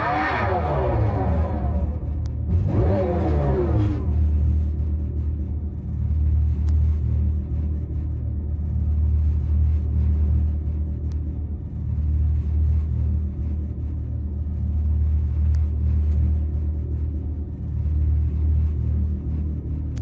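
The electric Dodge Charger Daytona SRT Concept's synthesized exhaust sound (the Fratzonic Chambered Exhaust): two falling rev-like sweeps in the first four seconds, then a steady deep rumble as the car idles and creeps forward.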